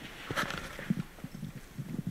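Soft, irregular knocks and clicks, several a second, in a quiet hall.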